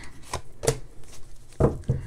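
Tarot cards being drawn from the deck and laid down on a hard tabletop: about five short, sharp card snaps and taps.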